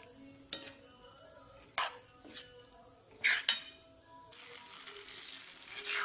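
A spatula scraping and knocking against a wok as chopped capsicum is stirred into potatoes and peas, a few sharp clicks in the first half. About four seconds in, a steady sizzle of the vegetables frying in oil sets in.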